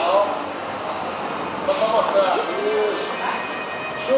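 Voices in a gym hall: a few short spoken calls in the middle, too unclear to make out, over a background murmur.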